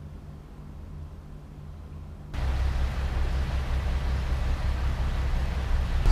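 Quiet room with a low steady hum. About two seconds in there is a sudden cut to louder, steady outdoor street noise with a deep rumble and hiss.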